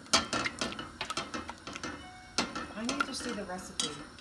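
Spatula knocking and scraping against a stainless steel saucepan in irregular clicks while a stick of butter is pushed around to melt.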